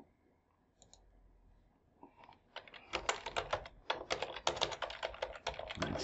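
Typing on a computer keyboard: a few faint clicks, then a quick, steady run of keystrokes from about two and a half seconds in.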